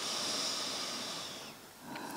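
A woman's slow, audible breath out, about a second and a half long, fading away.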